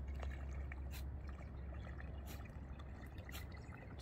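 Topwater fishing lure reeled fast across a pond's surface, churning the water faintly, with a few faint sharp ticks over a steady low rumble.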